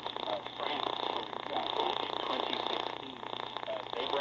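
A broadcaster's voice received on shortwave and played through a small portable radio's speaker, muffled under a steady hiss of static so that the words are hard to make out.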